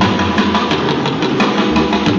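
Live jazz-funk band playing loud and dense, with a drum kit striking steady beats over double bass, piano and tenor sax.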